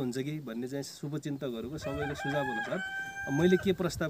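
A rooster crows once, starting about two seconds in and holding a long, steady call for about a second and a half, over a man talking.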